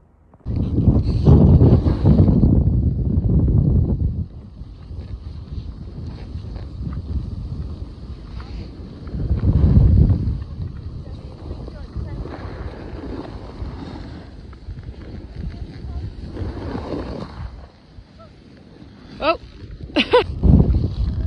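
Wind rushing over the microphone while riding down a ski slope, with the hiss of a snowboard sliding over snow. It swells loudest about a second in, again near ten seconds, and once more around seventeen seconds.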